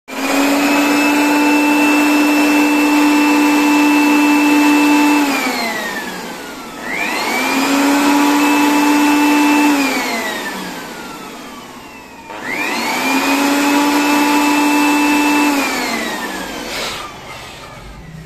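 Small electric air blower run three times: each time its motor whine comes up quickly, holds steady for a few seconds, then falls in pitch as the motor winds down after switch-off. The air it blows puts pressure on a pressure transmitter being tested.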